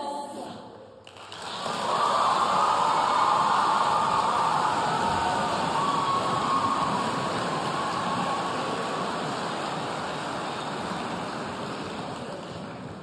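The last chord of a women's a cappella choir ends right at the start. About a second in, a large audience starts applauding and cheering, then slowly dies down.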